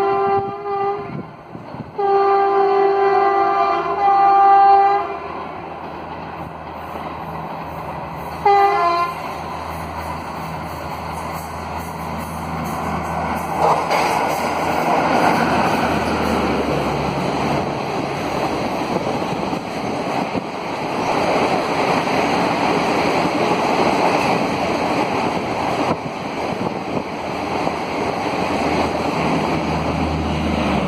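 Indian Railways WAP-4 electric locomotive's horn: a blast at the start, a longer one about two seconds in with a brief break, and a short one near nine seconds. Then the Garib Rath Express runs through at speed without stopping, the rushing and clatter of its ICF coaches building from about thirteen seconds in and holding steady.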